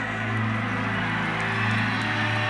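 Live rock band holding one sustained chord, electric guitar and band ringing out in a steady, unchanging drone.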